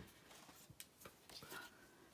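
Near silence: room tone with a few faint taps and a light rustle of a cardstock sheet being handled.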